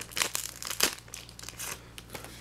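Foil trading-card booster pack wrappers crinkling and rustling as they are handled, in a string of irregular crackles with a couple of sharper ones.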